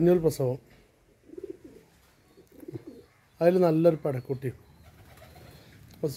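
Goats bleating: several quavering bleats, the loudest about three and a half seconds in, followed by a few shorter ones.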